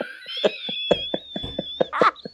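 People laughing in quick short bursts, with a thin high-pitched whine held through most of the laughter.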